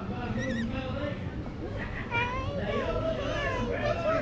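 Crowd chatter in a waiting line, with several overlapping voices including high-pitched children's voices.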